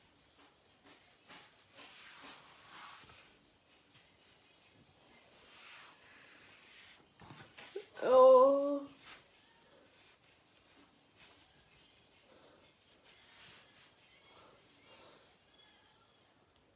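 A short vocal sound from a person, about a second long, just after halfway through. Around it is a quiet room with a few faint rustles.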